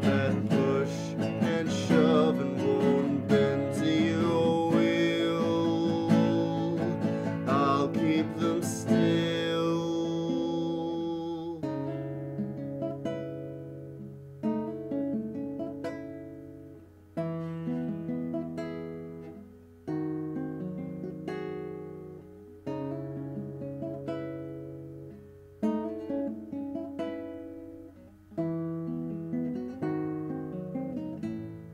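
A male voice sings over a capoed nylon-string classical guitar for about the first ten seconds. Then the guitar plays on alone, picking a new chord every two to three seconds and letting each one ring out.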